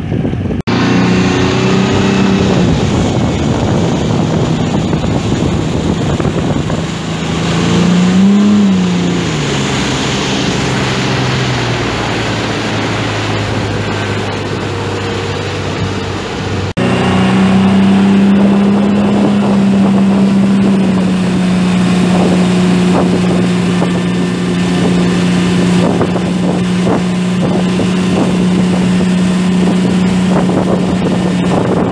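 Motorboat engine towing a wakeboarder. Its pitch rises and falls once about eight seconds in. After a sudden change about halfway through, it runs steadily at a higher pitch, with wind on the microphone and the rush of water from the wake.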